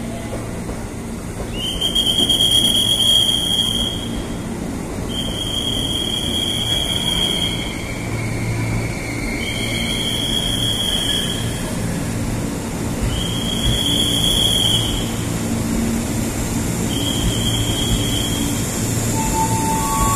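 JR East 203 series electric commuter train rolling slowly into the platform with a steady low rumble. A high-pitched squeal comes and goes about five times, each lasting one to two seconds.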